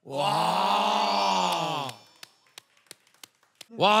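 A man's long, drawn-out 'oh' of amazement that rises slightly and falls away over about two seconds, followed by a few faint clicks.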